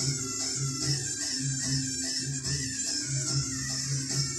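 Music playing through a 12 V 2.1-channel amplifier and its speakers from a Bluetooth source as a sound test, with a repeating bass note under the song.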